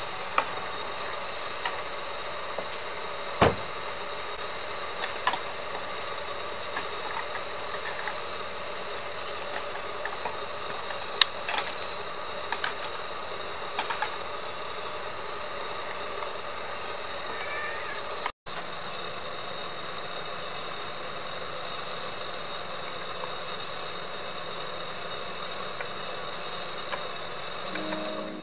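Bull elk sparring, their antlers knocking together in occasional sharp clacks, the loudest about three and a half seconds in and again near eleven seconds. Under them runs the steady hum of an idling vehicle.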